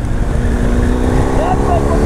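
Motorcycle engine running at a steady speed while riding, its note holding level, with heavy wind rumble on the microphone.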